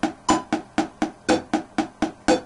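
A wooden stick tapping a hardback diary in even sixteenth notes, about four strikes a second, against a metronome ticking at 60 BPM, once a second.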